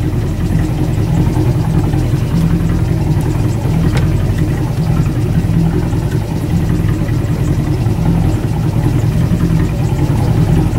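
Boat engine running steadily, a low even drone.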